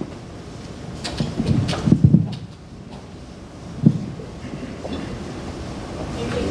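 Low room rumble with a few muffled bumps and rustles, the loudest cluster about two seconds in and a single bump near four seconds.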